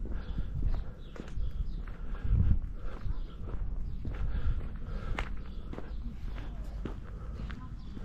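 Footsteps of a person walking outdoors, an uneven tread of one or two steps a second, over a low rumble that swells briefly about two and a half seconds in.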